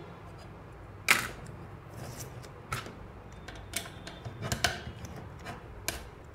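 Scattered sharp clicks and scrapes of a small tool and fingers on the thin aluminium case of a 24 V switch-mode power supply as the seal is broken and the cover pried open. About six clicks, the loudest about a second in.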